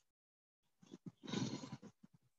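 A horse breathing out heavily through its nostrils close to the microphone, one breathy blow lasting about a second.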